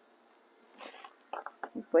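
Mostly quiet, with one brief soft hiss-like noise about a second in and a few faint ticks, then a woman starts speaking near the end.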